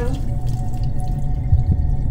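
Low, steady rumbling drone of horror-film sound design, with faint steady tones above it and a few faint ticks.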